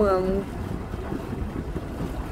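Wind buffeting the microphone aboard a boat under way on a river, a low uneven rumble.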